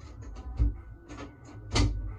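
A few irregular soft knocks and thumps, the loudest near the end, over a steady low hum.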